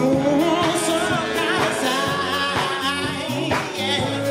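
Live soul band playing: a male lead singer sings a held, bending melody over a drum kit, bass guitar and electric keyboard.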